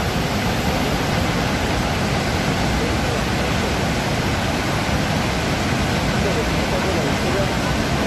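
Steady, loud rush of a massive waterfall, an even wall of noise with no breaks, and faint voices of people just audible beneath it.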